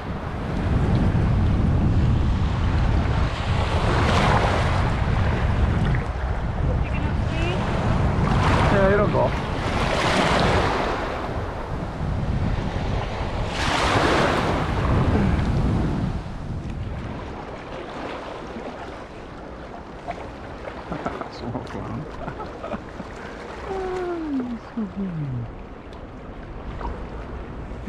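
Small waves washing up on a shallow shore in surges every few seconds, with strong wind buffeting the microphone. The wind and waves ease off after about 16 seconds.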